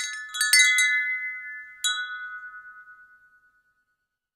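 Metal chimes ringing: a quick cluster of struck tones, then one more strike nearly two seconds in, the ringing dying away before the end.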